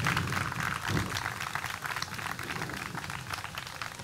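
Audience clapping, a dense crackle that slowly thins and fades toward the end.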